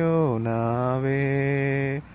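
A man's voice chanting one long held vowel, stepping down to a lower pitch about a third of a second in and holding it until it breaks off near the end.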